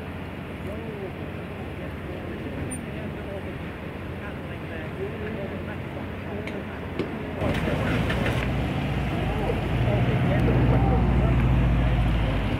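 Faint voices of people talking over a steady outdoor background, then about seven seconds in the low drone of a heavy engine starts up and grows louder while the boat is being hoisted.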